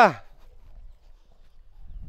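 The drawn-out end of a man's shouted call, falling in pitch and cut off right at the start, followed by a faint low rumble that swells near the end.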